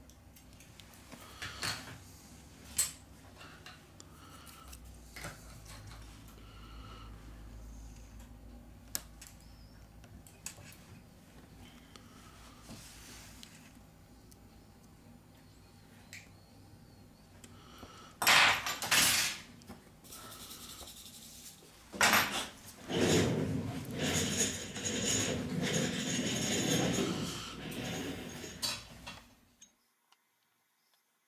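Small plastic and metal smartphone parts being handled during reassembly: a few light clicks from parts pressed into place, then a loud clatter about two-thirds of the way in. Dense scraping and rattling follow as the loudspeaker cover is fitted and screwed down, ending just before the close.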